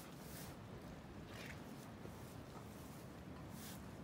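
A black alpaca snuffling, a few faint, short breathy sniffs with its nose up against a cat.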